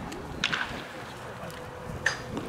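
A baseball bat striking a ball once in batting practice, a single sharp crack about half a second in.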